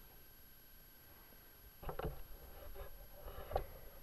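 Handling noise from a small camera being picked up and turned: quiet for the first couple of seconds, then a few soft knocks with rustling between them, the sharpest knock near the end.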